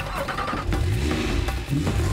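Porsche 911 Carrera's direct-injection flat-six engine revved twice, its pitch rising and falling each time, over a backing music track.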